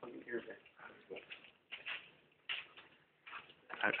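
Quiet, indistinct voices in short, broken bursts.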